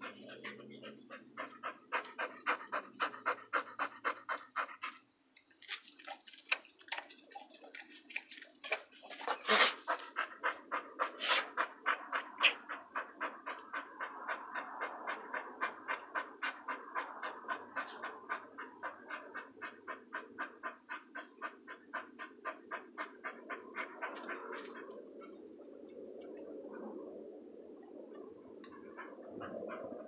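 A dog panting close to the microphone in quick, even breaths, about four a second, with a brief pause about five seconds in; the panting gives way to softer, irregular noise near the end.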